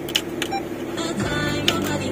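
Music playing from the car's dashboard stereo head unit, with a few short clicks as its controls are pressed, over the steady idle of the Honda Brio's engine inside the cabin.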